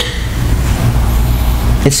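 A steady low rumble fills a pause between spoken phrases, with a voice starting again right at the end.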